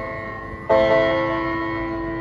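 A dhumal band's loudspeaker rig playing an instrumental melody in sitar-like, bell-like tones. One ringing note fades, then a new one is struck about 0.7 s in and rings on.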